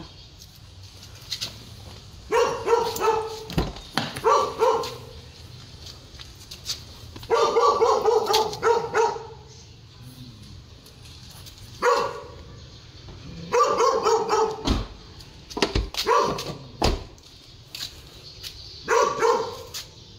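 A dog barking in repeated bouts every couple of seconds, with a few sharp knocks in between.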